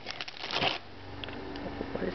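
A hand rummaging in a cardboard box of dog biscuits: quick rustling and clicking, loudest about half a second in, then quieter.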